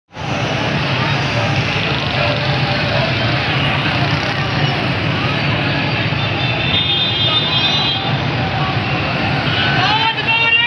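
Steady street traffic noise of motorcycle and vehicle engines running, mixed with voices of people on the street.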